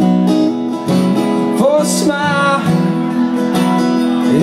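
Live acoustic guitar strummed steadily in chords, with a man singing a short, wavering phrase about halfway through.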